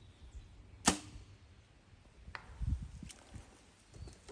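Compound bow shot: one sharp snap of the string and limbs on release, a heavy arrow leaving the bow about a second in. A faint distant thwack about a second and a half later is the arrow striking the cardboard target far downrange.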